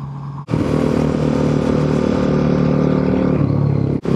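Motorcycle engine running steadily while riding, with wind noise over it. The sound jumps louder about half a second in, and the engine note drops slightly near the end.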